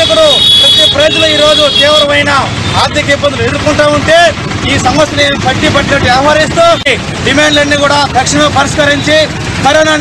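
A man speaking Telugu at length, addressing a microphone, with road traffic behind him. A steady high tone sounds under his voice for about the first two seconds.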